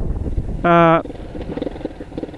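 Low rumble of a motorcycle engine and riding wind, heard from the rider's position. About two-thirds of a second in, the rider gives a short held "uhh" of hesitation at one steady pitch.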